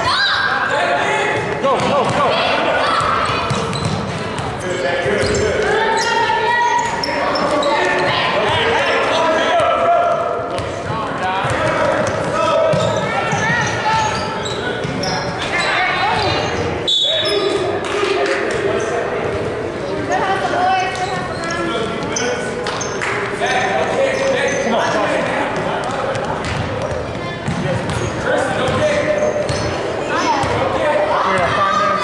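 A basketball being dribbled on a hardwood gym floor during play, with indistinct voices of players and spectators, all echoing in a large gym.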